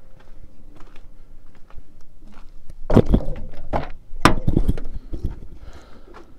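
Footsteps and handling knocks, then a few loud thunks about three and four seconds in: a vehicle door being opened and shut as someone climbs into the cab.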